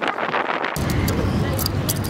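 Steady outdoor background noise, a rumble with indistinct voices in it. The background changes abruptly under a second in.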